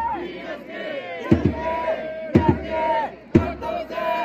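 Japanese pro baseball cheering section performing a chance theme: a massed crowd chants and shouts over trumpets holding notes, with a big drum struck about once a second.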